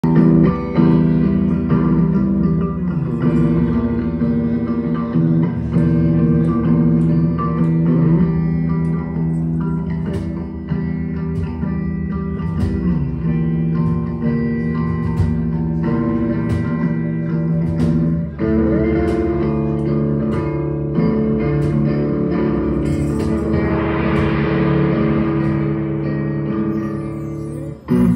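Live instrumental band intro: an electric guitar picking notes over a sustained low drone, with a few sliding pitches. A brief hissing swell rises and fades a few seconds before the end.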